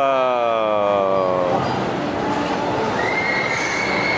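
A young child's long, drawn-out "whoa" of amazement, falling in pitch over about a second and a half. About three seconds in, a steady high-pitched whine starts and holds.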